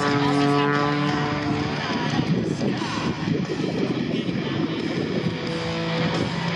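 MX Aircraft MXS-RH single-engine aerobatic plane's engine and propeller, a steady drone from overhead while the plane dives and tumbles, with loudspeaker music mixed in.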